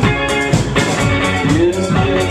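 A small band playing live rock: two electric guitars over a drum kit, with some notes bending in pitch.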